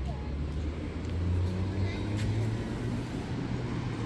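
Low, steady rumble of a motor vehicle's engine or passing road traffic, swelling a little about a second in and easing off toward the end.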